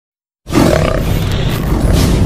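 Intro-animation sound effect: a loud rushing noise with a deep rumble underneath, starting abruptly about half a second in and holding steady.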